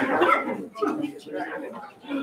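Several people talking in a room, with a loud burst of voice right at the start.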